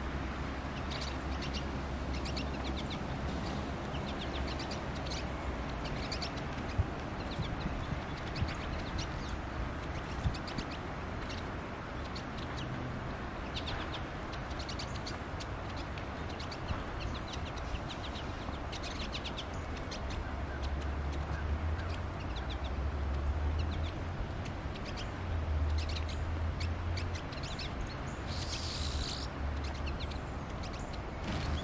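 A flock of pine siskins twittering: many short chirps, one after another almost without pause, as the birds talk to each other incessantly. There is a longer, higher note near the end.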